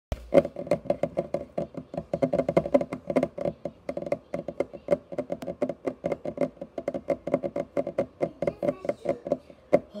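Fast typing on a keyboard: a dense, irregular run of sharp keystrokes, about eight to ten a second, that stops just before the end.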